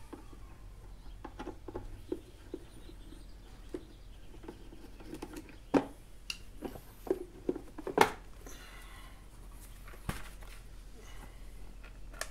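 Scattered light clicks and knocks of hand tools and a plastic scooter body panel as the last screw comes out and the cover is worked free, with two louder knocks about six and eight seconds in.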